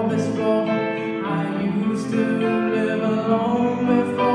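A young male voice singing a slow song into a microphone, with long held notes, over instrumental accompaniment.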